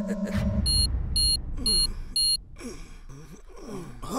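Four short, high electronic beeps, about two a second, over a low rumble: a security alarm going off, the signal of a detected theft.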